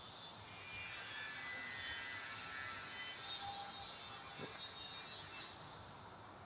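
A steady, high-pitched hiss with a faint buzz in it, fading away near the end.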